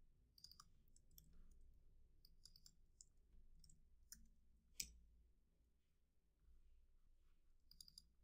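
Near silence with faint, scattered clicks of typing on a computer keyboard, one sharper click standing out about five seconds in.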